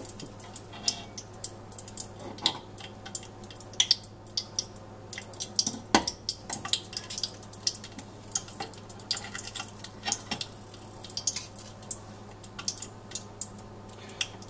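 Hot mineral oil in a stainless steel saucepan crackling and popping irregularly, with a sharper knock about six seconds in.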